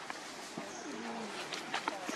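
A faint, low cooing call, followed by a few soft clicks about a second and a half in.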